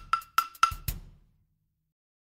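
Percussion beat of a chant drum track: short, sharp, knocking strikes at about four a second, each with a brief ringing tone. The beat stops about a second in.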